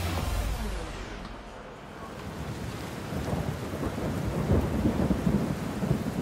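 A low rumbling noise with a rain-like hiss, dipping in the first couple of seconds and then swelling towards the end.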